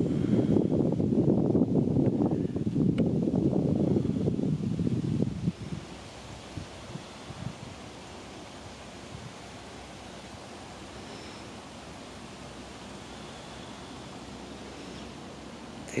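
Wind buffeting the microphone: a loud, gusty low rumble for about the first five seconds, which then stops suddenly, leaving a faint steady outdoor background.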